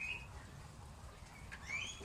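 Short, rising high-pitched animal chirps: one right at the start, then a quick run of several near the end.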